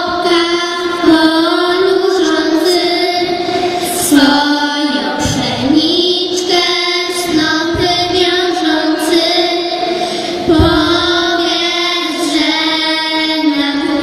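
Three young girls singing a Polish Christmas carol together through microphones and a PA, in one melody line with long held notes.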